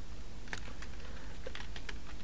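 Computer keyboard being typed on: a few scattered keystrokes over a faint steady hum.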